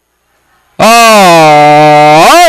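A man's voice, the race caller, starts suddenly and loudly about a second in with one long drawn-out call, its pitch dipping slightly and held to the end.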